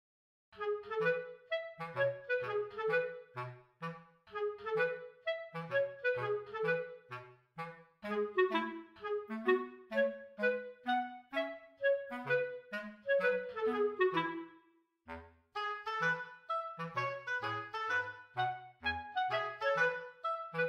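Background music: a light instrumental tune of short, detached notes over a bass line, with a brief pause about three-quarters of the way through.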